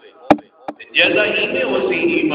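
Two sharp knocks about half a second apart in a pause, the first the louder, followed about a second in by a man's voice resuming.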